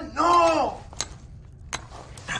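A short voiced utterance lasting about half a second, without recognisable words. It is followed by two sharp clicks, one about a second in and one near the end.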